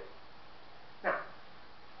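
A man's voice saying a single drawn-out word, "Now," about a second in, over steady low room hiss.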